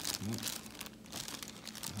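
Clear plastic bag crinkling and rustling in irregular crackles as a figure is pulled out of it by hand.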